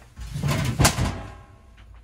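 Rummaging inside an old Frigidaire refrigerator lying on its back: a scraping clatter with one sharp knock about a second in, followed by a brief metallic ringing that fades.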